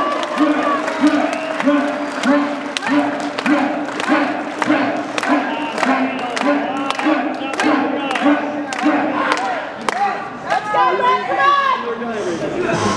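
Crowd clapping in a steady rhythm, a little under two claps a second, with voices shouting in time on each beat to urge on a powerlifter before his bench press attempt. Near the end the beat breaks up into scattered shouts of encouragement.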